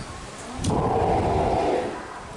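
Steller sea lion pup calling: one hoarse, pitched call about a second long, starting just under a second in.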